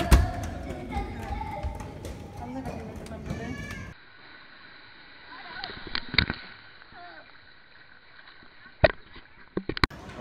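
Children running and shouting along a carpeted corridor, with a hard thud at the start and a few softer thuds. About four seconds in it cuts to a quieter stretch broken by a few sharp clicks.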